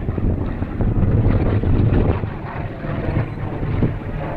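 An F4U-4 Corsair's 18-cylinder Pratt & Whitney R-2800 radial engine running at power overhead, a little quieter in the second half, with wind buffeting the microphone.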